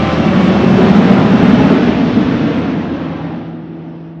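A loud rushing whoosh sound effect that swells to a peak about a second in and then fades away. A low ringing tone comes in near the end.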